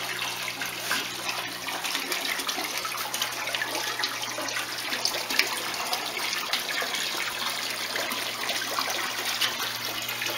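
Water sloshing and splashing as hands work in a bucket to catch a koi and move it into a tote of water, over a steady trickling hiss and a faint low hum.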